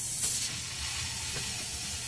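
Compressed natural gas hissing steadily out of the pressure-relief screw on the fuel filter canister of a 2000 CNG Honda Civic, opened with an Allen wrench to depressurise the fuel system; the hiss eases slightly about half a second in as the pressure falls.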